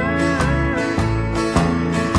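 Instrumental fill in a 1974 country recording: the band's guitars play over a steady beat, with a held note bending up and back down in the first second.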